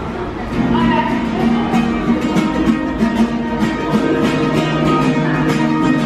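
Busker's acoustic guitar playing a quick run of plucked notes over held low notes, heard in a pedestrian underpass.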